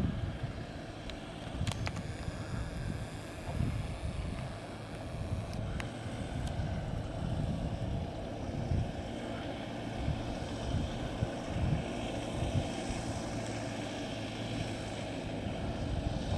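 Engines of a convoy of off-road 4x4 vehicles running on a dirt track, a steady low rumble, with wind on the microphone.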